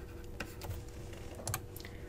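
Faint, irregular clicks and taps of a stylus writing on a tablet screen, a handful of sharp ticks spread through the two seconds.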